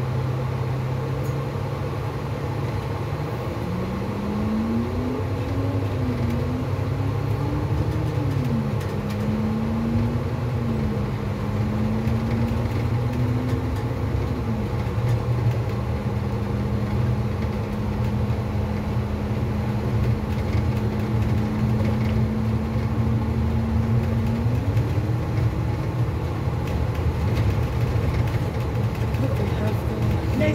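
Transit bus engine and driveline running while the bus is under way, heard from inside. A steady low drone sits under a whine that rises and drops back several times, holds a level pitch for a while, then climbs again near the end.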